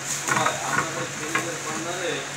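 Metal-and-plastic selfie sticks clattering and rattling against each other and the glass counter top as they are pushed together into a row, in a few short bursts.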